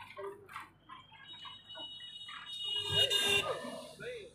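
Voices talking in the background, with a louder, higher-pitched sound lasting about a second, starting about two and a half seconds in.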